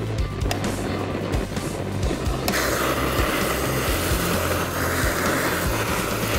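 Background music; about two and a half seconds in, a handheld kitchen blowtorch starts with a steady hissing flame as it browns cream sauce over sole fillets.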